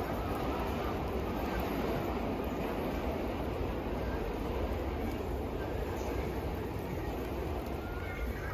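Steady noise of traffic and rain on a wet city street, with a deep rumble underneath.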